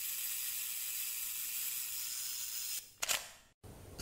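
Camera sound effect: a steady high hiss, then a short click about three seconds in, followed by a brief dead silence.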